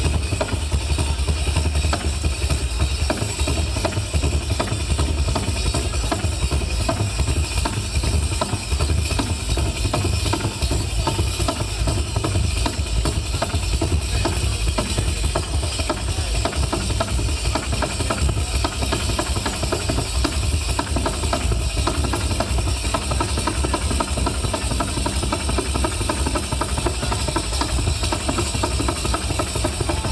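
Live southern Italian pizzica music: tamburelli frame drums beating a fast, unbroken rhythm with accordion and mandola, carried by a PA and recorded with a heavy, booming low end.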